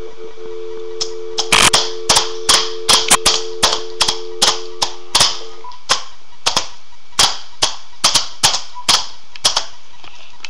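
A small child's hands slapping and banging a laptop keyboard: sharp, irregular clacks, about two or three a second. A steady two-pitch tone sounds under the clacks and stops about six seconds in.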